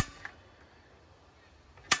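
Propane patio heater being lit: a sharp click of the igniter at the start and again near the end, with a faint hiss of propane gas flowing in between.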